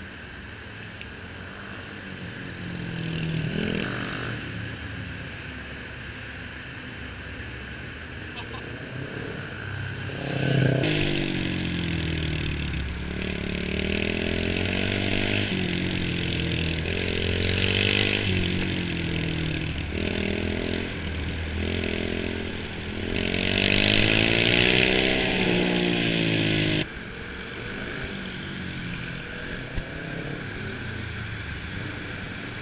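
Motorcycle engines: one swells as it passes early on, then a close engine revs up and falls back again and again as the bike accelerates and slows through tight turns. Near the end the close engine cuts off abruptly, leaving a quieter engine sound.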